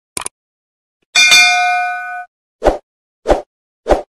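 Subscribe-button animation sound effects: a quick double mouse click, then a bell ding that rings for about a second, then three short pops evenly spaced over the last second and a half.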